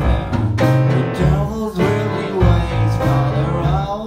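Blues played on grand piano, electric bass and drums: the bass holds low notes under the piano's chords, with regular drum hits.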